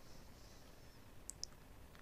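Near silence with a faint hiss, broken past the middle by two quick faint computer-mouse clicks, a fraction of a second apart.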